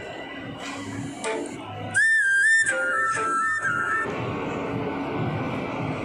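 Echoing shopping-mall crowd ambience, with a loud, high whistle-like tune of a few wavering notes lasting about two seconds near the middle.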